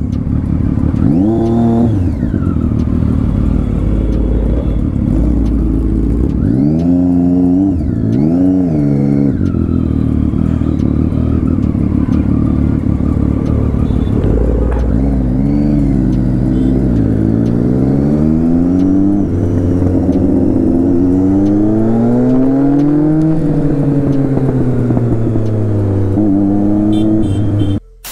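Triumph Street Triple 675 inline-three motorcycle engine accelerating through the gears while riding. It is loud, and its pitch climbs and then drops back at each gear change, in a run of repeated rises in the second half.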